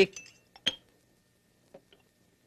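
Cutlery clinking against china and glass on a breakfast table: two light, ringing clinks in the first second, then a couple of faint taps near the end.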